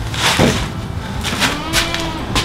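A plastic milk crate shifting under a man as he stands up from it, then a few footsteps of sandals on a concrete floor.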